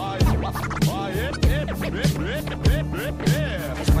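Hip hop track with DJ turntable scratching: quick rising and falling scratch sweeps over a steady beat with heavy kick drums, and a rapped word right at the end.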